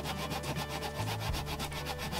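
Mitre hand saw (backsaw) cutting a small piece of pallet wood, the teeth rasping in a quick, even back-and-forth rhythm.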